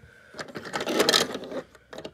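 Plastic turntable under two diecast toy trucks being turned a quarter turn, giving a rough scraping rattle about a second long.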